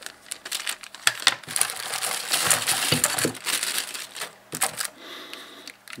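Clear plastic packaging bag crinkling as it is handled, with scattered sharp clicks; the crinkling is densest around the middle.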